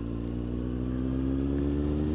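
Kawasaki Z750R's inline-four engine pulling steadily under throttle, its pitch and loudness rising slowly as the bike accelerates.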